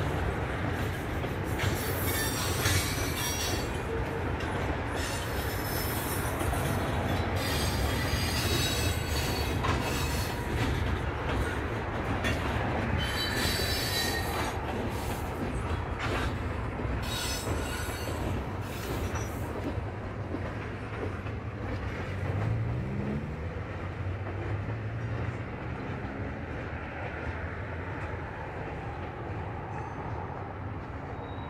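Norfolk Southern manifest freight train's tank cars and covered hoppers rolling past, a steady rumble with repeated wheel squeals and clanks. The squeals and clanks die away after about twenty seconds as the tail of the train moves off, leaving the rumble.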